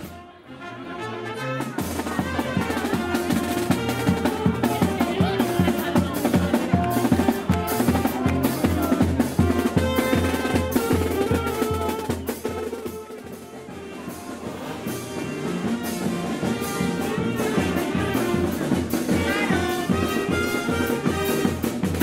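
A street brass band playing a lively tune, with saxophones, trombone, bass drum and snare drum keeping a steady beat. The music fills in about two seconds in after a brief dip.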